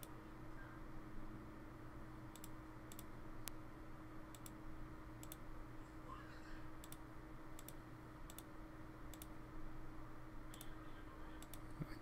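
Faint clicks of a computer mouse button, about fifteen single clicks at irregular spacing, made while placing the nodes of a vector path. A steady low hum sits underneath.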